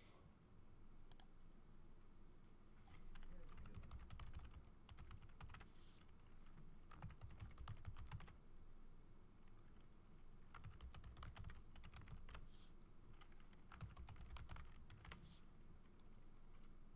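Faint typing on a computer keyboard, in about four bursts of quick keystrokes with short pauses between.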